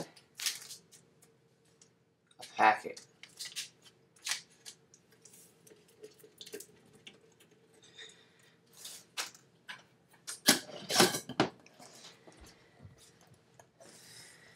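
Hands tearing open a paper packet of kefir starter and handling a glass jar: scattered small clicks and rustles, with a louder cluster of handling noise about ten seconds in, over a faint steady hum.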